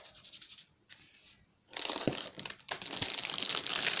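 Plastic packaging crinkling loudly as a bagged pack of pita breads is picked up and handled, starting a little under halfway through, after a few faint rustles.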